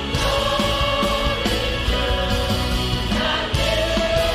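A choir singing a worship song with a live band, a drum kit and electric guitar playing along.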